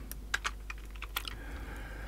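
Computer keyboard keys being pressed: several separate light clicks, unevenly spaced.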